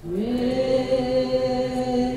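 Mantra chanting in a long, low held note. A new phrase starts after a short breath pause, its pitch sliding up at the onset and then held steady.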